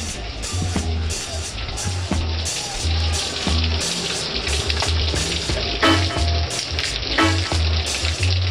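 Heavy rain pouring down in a steady, dense hiss onto a deck, foliage and a car, with water streaming off the roof edge. Music with a repeating bass line plays underneath.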